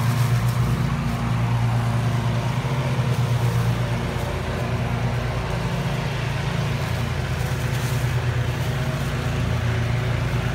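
An engine running steadily at a constant speed, a low even hum that holds without change.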